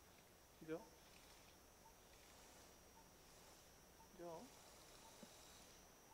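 Near silence: faint room tone, broken by two brief, quiet voice sounds about a second in and about four seconds in.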